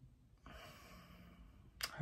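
A woman's faint sigh: a soft breath out lasting about a second, followed near the end by a brief click just before she starts to speak.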